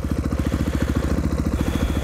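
Dirt bike's single-cylinder four-stroke engine idling steadily with the bike standing still, an even, rapid train of exhaust pulses.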